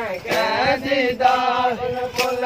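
Men's voices chanting a Shia mourning lament (nauha) together, a sung, repeating refrain that accompanies matam.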